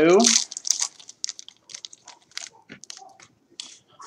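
Trading-card pack wrapper crinkling and cards being handled as a pack is opened: a busy run of small, quick crackles and ticks.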